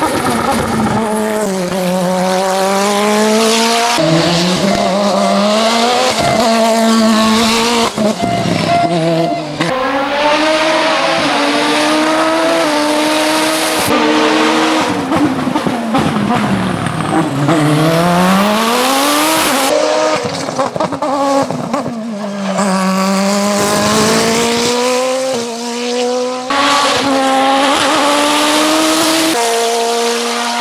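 The turbocharged engine of an Osella PA 2000 Turbo sports-prototype race car, accelerating hard uphill. Its pitch climbs through each gear and falls back on the shifts and braking for corners. It is heard in several short passes spliced one after another, so the sound jumps abruptly at each cut.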